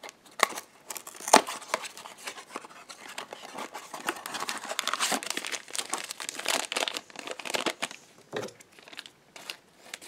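A few sharp clicks as a small cardboard blind box is opened, then a black plastic blind bag crinkling and rustling steadily in the hands for several seconds, thinning out near the end.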